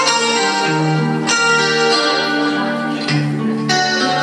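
Instrumental backing music led by keyboard, with held chords over a bass line that change about every second.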